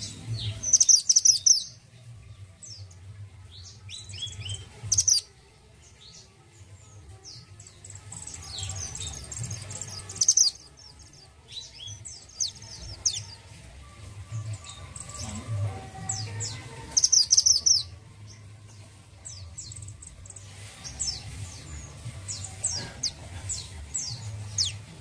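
Male minivet chirping and singing in a cage: sharp high notes and quick runs, with loud bursts about a second in, near 5 and 10 seconds, and again near 17 seconds, and softer chirps between.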